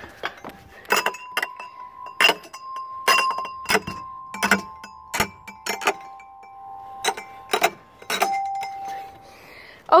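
Metal chime bars on a playground music panel struck over and over at an uneven pace, about fifteen sharp clinks, each leaving a bell-like ringing tone that hangs on for several seconds.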